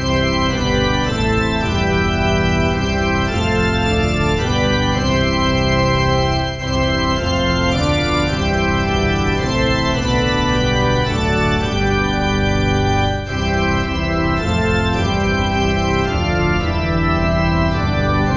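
Organ playing a hymn: full sustained chords held and then moved from one to the next, with two short breaks between phrases.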